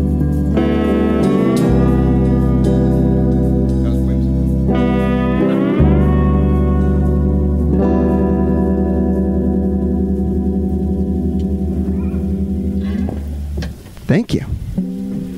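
Live band with electric guitars and bass holding long sustained chords, the guitar notes sliding up in pitch twice. The music stops about thirteen seconds in, at the end of a song.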